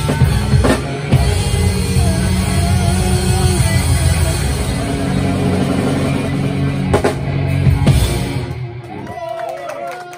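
Live rock band with drum kit, electric guitar and bass guitar playing loud. Two big drum hits come about seven and eight seconds in, then the sound thins and fades to a ringing, wavering tone as the song ends.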